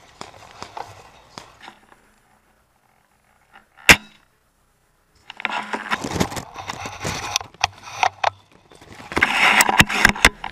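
Leaves and brush rustling and brushing against the camera as the wearer moves through dense ground foliage, in two stretches from about five seconds in. A single sharp snap, the loudest sound, comes a little before, after a few faint ticks and a short near-silent gap.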